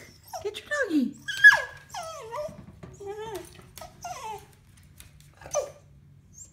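A dog whining and whimpering in a run of high, falling cries over about four seconds, with one more cry near the end. It is anxious over its stuffed toy lying in a metal tub that it is too scared to reach into.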